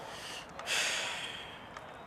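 A short hissing breath close to the microphone, starting suddenly about two thirds of a second in and fading over the next second, over a steady outdoor hiss.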